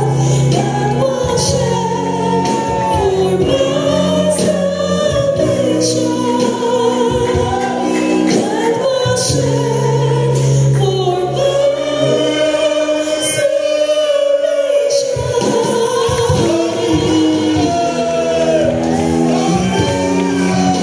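Mixed choir of women and men singing a solemn gospel worship song through stage microphones, with several voice parts held together over steady low notes.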